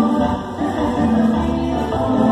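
Mexican tropical dance band playing, with several voices singing together over the band.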